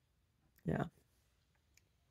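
One spoken word, then a few faint clicks near the end as a glazed skull-shaped mug is raised to the lips for a sip, over quiet room tone.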